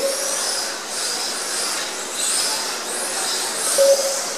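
Several Kyosho Mini-Z electric RC cars racing: a high-pitched motor and drivetrain whine that rises and falls in pitch as the cars speed up and slow down through the corners, over a steady hiss of tyres on the track. A short beep sounds near the end.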